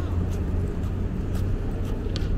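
City traffic ambience: a steady low hum of road vehicles under an even wash of urban noise, with a couple of short, sharp ticks near the end.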